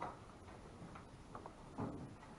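A few sparse light clicks and taps of draughts play at the tables, with the loudest, a duller knock, near the end.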